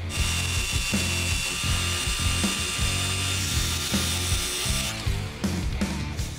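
Handheld power tool running steadily with a high whine, stripping paint off a dented steel truck hood down to bare metal. It stops about five seconds in.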